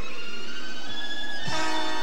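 Background cartoon score of sustained held chords. A fuller, louder chord comes in about one and a half seconds in.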